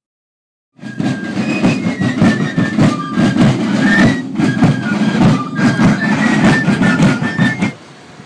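A marching drum beat with a faint fife tune over it, loud and coarse, starting about a second in and cutting off just before the end.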